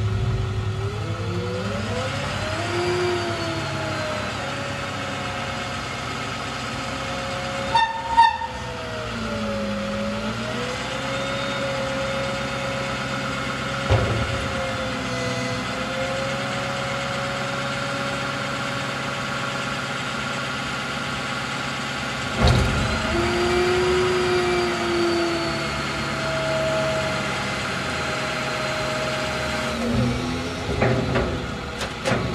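Pickup truck's engine running under load as its hook-lift hydraulics pull a steel mini roll-off bin up onto the bed, the drone rising and falling in pitch as the arm works. Sharp metal knocks about eight seconds in, again near fourteen seconds and near twenty-two seconds, as the bin shifts and settles on the frame.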